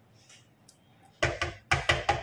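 A metal knife knocking and scraping inside a tin can as drained corn kernels are pushed out into a pot: a quick run of sharp knocks, about five in under a second, starting a little past halfway.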